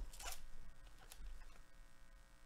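Foil wrapper of a baseball card pack being torn open and pulled off the stack of cards: a short crinkly rip with crackles in the first half second, then fainter rustling as the cards are handled.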